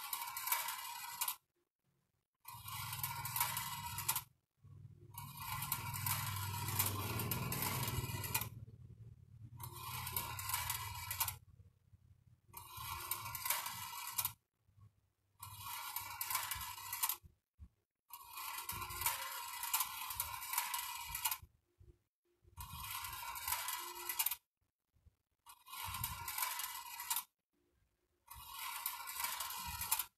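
Small metal balls rolling and scraping along a bent-wire track of a homemade battery-driven marble machine, with its wire spiral lift turning. The sound comes in repeated stretches of one to four seconds with short breaks between, a low rumble under one longer stretch near the middle.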